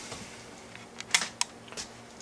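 A few light, sharp clicks in quick succession, starting about a second in, over quiet room tone.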